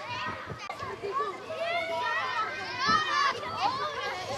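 A crowd of schoolchildren chattering and calling out all at once, many high voices overlapping, with a louder shout near the end.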